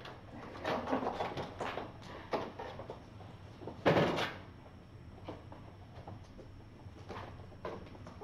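Kittens scrambling over and knocking against a small box scratcher on a hard floor: a string of light knocks and scrapes, with one louder thump about four seconds in.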